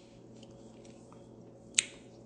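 A single short, sharp click about two-thirds of the way in, over a faint steady room hum.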